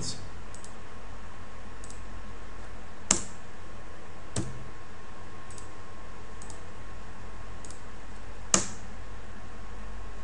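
Computer mouse clicking: two sharp clicks, about three and eight and a half seconds in, with a softer click between them and a few faint ticks. A steady low hum and hiss lies under them.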